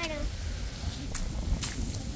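Footsteps on a concrete driveway, two sharp scuffs about half a second apart, over a low rumble; a voice trails off at the very start.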